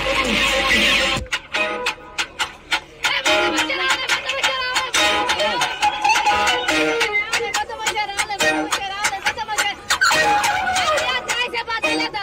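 A hip-hop instrumental beat, played over the sound system for a rap battle, kicks in about a second in after a burst of crowd noise. It runs with sharp drum hits and a melodic sample.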